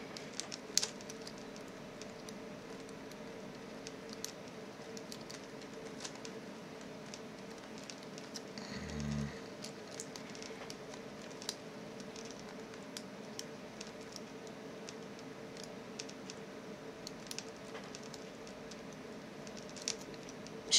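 Faint, scattered small clicks and scrapes of a half-diamond lock pick working the pin tumblers of a six-pin Euro cylinder under tension, over a steady low hum. A brief low sound stands out about nine seconds in.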